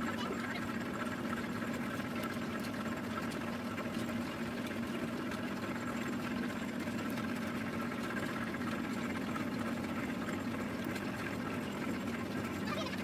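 Mustard oil expeller machine running steadily: an even mechanical hum with a constant low tone and a steady higher whine.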